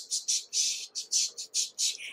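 Rhythmic high swishing, short strokes about four or five a second, like a shaker beat between sung lines.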